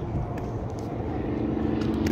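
Low, steady rumble of a distant engine, with a faint steady hum that comes in about a second in.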